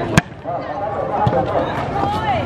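A hand striking a volleyball on an overhand serve: one sharp slap about a fifth of a second in, with a fainter hit of the ball about a second later. A crowd's chatter and calls run underneath.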